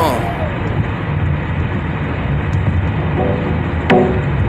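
Steady road and engine noise inside a moving car's cabin, after the last sung note of a song fades out at the start. A brief pitched sound and a sharp click come near the end.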